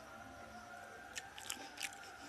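A person chewing a mouthful of chicken close to the microphone: little more than a faint background for the first second, then a quick run of short, sharp wet mouth clicks and crunches near the end.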